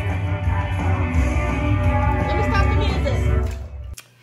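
A rock song with guitar, vocals and heavy bass playing from a Soundcore Motion Boom Bluetooth speaker that is still working after being dunked in bathtub water. The music drops away just before the end.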